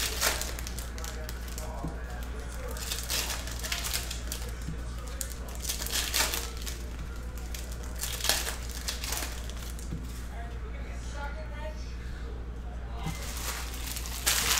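Foil trading-card pack wrapper being torn open and crinkled by hand, in irregular crackling bursts, over a steady low hum.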